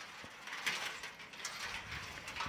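Bent metal fence pickets rattling and scraping as they are pulled and handled, a string of uneven metallic clatters.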